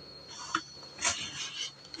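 Pause in the talk: faint background with a thin, steady high-pitched tone and a few soft, brief rustles.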